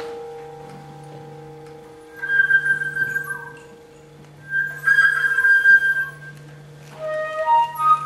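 Contemporary classical flute solo: a chord from just before dies away, then the flute plays two breathy, held high notes with a lot of air in the tone, followed by a few short notes near the end. A faint steady hum runs underneath.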